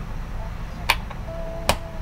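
Music playing at low volume through an Amazon Echo Dot, streamed over Bluetooth from a phone and just turned down to volume 5. Two sharp clicks sound, about a second in and near the end.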